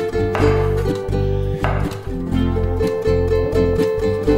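Background music of plucked strings, ukulele or guitar, with a steady beat. Under it are a few strokes of a kitchen knife slicing zucchini into sticks on a wooden cutting board.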